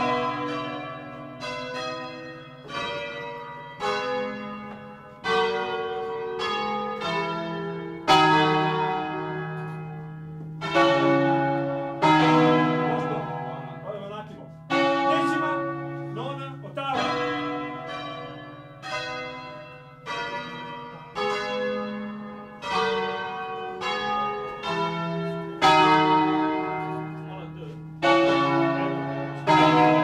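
A ring of church bells swung by ropes and rung full out in the Bergamasque way (suono a distesa). Bells of different pitches strike in turn, about one stroke every second or so at uneven spacing, some strokes louder than others, each stroke ringing on as it fades.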